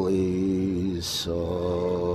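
A man singing unaccompanied in a low voice, holding two long steady notes split about a second in by a short hiss.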